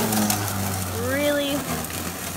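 Greenworks 19-inch battery-powered electric lawn mower running with a steady low hum as it cuts into very tall grass.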